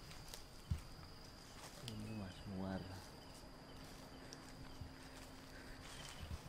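Quiet outdoor ambience with a faint steady high-pitched tone and a lower hum throughout. A single knock comes just under a second in. About two seconds in, a man makes two short wordless voice sounds.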